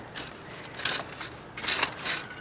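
Thin metal sheet with a Lazertran transfer on its face crinkling and crackling in the hands as it is bent, in three short bursts.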